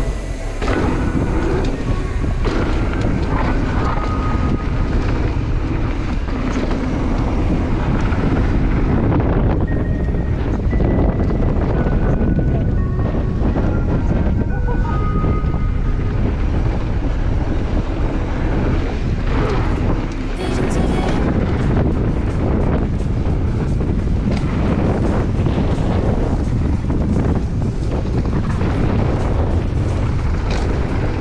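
Mountain bike ridden fast down a dirt trail: steady wind rush on the microphone over the rumble and rattle of tyres and bike on the dirt, with a few short high squeaks. The noise drops briefly about twenty seconds in.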